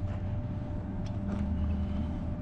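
Steady low mechanical hum with a thin constant tone above it, like an engine or machinery running nearby, with a few faint ticks over it.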